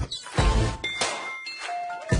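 Performance soundtrack made of sound effects: bright bell-like dings and clangs that ring on briefly, over heavy low thuds.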